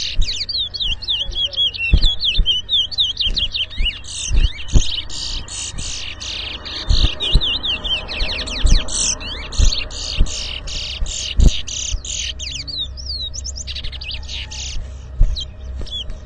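Caged towa towa (chestnut-bellied seed finch) singing, a nearly unbroken stream of high, fast whistled notes with quick rising and falling slides. A few dull low knocks sound underneath.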